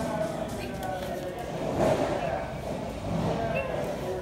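Indistinct voices over steady background noise.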